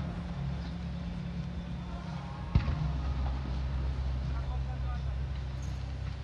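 A firework display: one sharp bang about two and a half seconds in, over a steady low rumble and indistinct voices.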